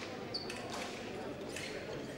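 Fencers' shoes striking the piste during footwork: several separate sharp footfalls in a large hall, with a brief high squeak about a third of a second in.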